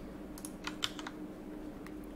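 Computer keyboard keystrokes as a value is typed and the file saved with Ctrl+S: a quick run of faint key clicks about half a second in, and one more near the end.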